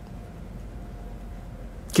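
Room tone in a pause between spoken phrases: low, steady background noise with a faint hum. A man's voice starts again right at the end.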